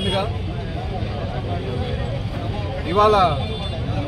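A man speaking in short phrases with a pause of about two and a half seconds between them, over a steady low rumble in the background.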